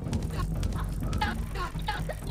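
A man laughing in quick, choppy bursts.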